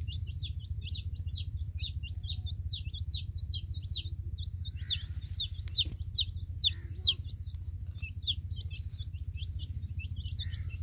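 Baby chicks peeping: a continuous run of short falling peeps, several a second, with a few louder ones past the middle, over a steady low hum.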